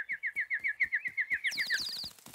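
Two small cartoon birds tweeting: a quick, even run of short falling chirps, about eight a second, with a second, higher-pitched chirping joining near the end.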